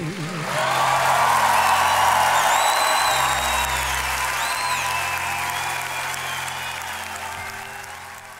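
Audience applauding and cheering with a few high whistles as a live ballad ends, the applause fading out near the end.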